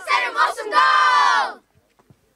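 A group of children shouting their team chant together: a couple of short chanted syllables, then one long, loud final shout that cuts off sharply.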